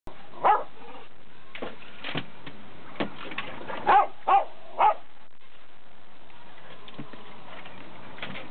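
A small dog barking in short, sharp yips: one about half a second in, a few fainter ones, then three loud ones close together around four to five seconds in.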